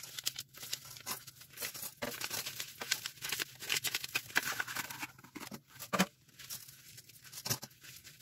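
Dried cleaning-powder paste being crushed by hand, giving a run of irregular small crackles and crunches with a sharper snap about six seconds in.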